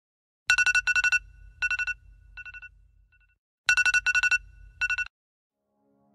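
Phone alarm ringtone ringing in rapid trilled bursts on a high two-note tone, over a low hum. The pattern plays twice and cuts off abruptly about five seconds in, as the alarm is snoozed.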